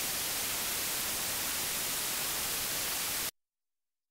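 Television static: a steady white-noise hiss that cuts off suddenly a little over three seconds in.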